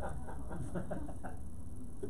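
Quiet room tone: a steady low hum with faint, indistinct background sounds and no clear speech.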